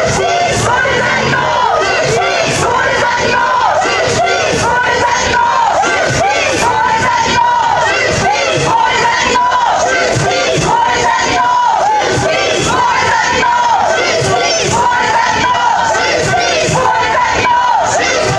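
Crowd of demonstrators chanting a short protest slogan in unison, repeated over and over about every two seconds.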